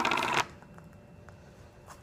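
A rapid run of small clicks, about a dozen a second, that stops about half a second in, followed by faint room tone.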